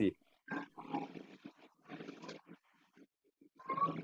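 Faint, muffled bits of a child's voice coming over a video-call connection, answering in short broken snatches between longer pauses.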